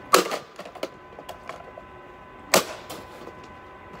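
Two hard blows of a hammer on a plastic Yonanas dessert maker, one right at the start and another about two and a half seconds in, with lighter clicks and clatter between and after.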